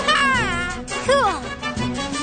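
Background music with a high, wavering, meow-like cry that slides down in pitch, several times over.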